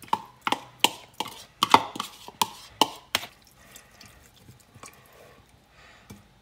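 A spoon knocking and scraping against a mesh strainer as ginger pulp is pushed into it. About ten sharp knocks come in the first three seconds, roughly three a second, then only faint ticks.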